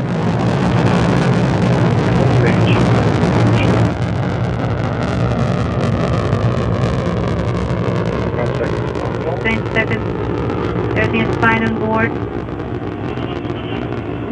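Soyuz rocket's core stage and four strap-on booster engines firing at full thrust during the climb after liftoff: a loud, steady rumble that swells in the first second and eases slightly about four seconds in.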